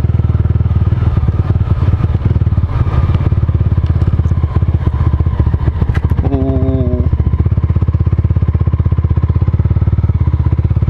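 Mahindra Mojo 300's single-cylinder engine running steadily under way on a dirt track, with a fast, even pulse.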